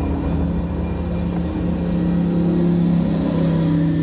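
COASTER commuter train rumbling past at a level crossing, with a steady low drone under the rumble that grows stronger about halfway through.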